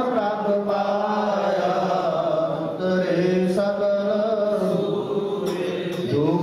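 A male voice singing Gurbani kirtan (a Sikh hymn) in long, drawn-out notes that glide slowly in pitch. A harmonium holds a steady drone underneath.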